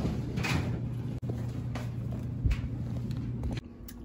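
Kitchen handling sounds: a plastic mixing bowl of dough being moved and covered, giving a few soft rustles and knocks, a sharp click and a low thud, over a steady low hum that cuts off near the end.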